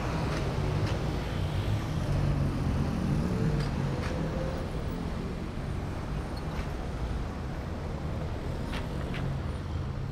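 City street traffic: motor vehicle engines running, with a steady low engine rumble throughout and a few faint ticks.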